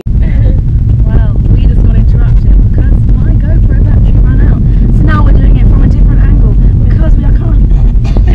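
Loud, steady low rumble of road and engine noise inside a moving car's cabin, with a woman's voice heard faintly over it.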